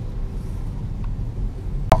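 Low, steady rumble of a car's engine and tyres heard from inside the cabin while driving slowly, with one short click near the end.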